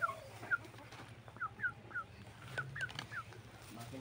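Broiler chicken giving a series of short, falling calls, about two a second.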